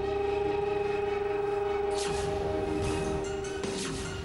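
Dramatic background-score sting: one synthesised tone that slides up quickly and then holds steady for several seconds, with whooshes about two seconds in and near the end.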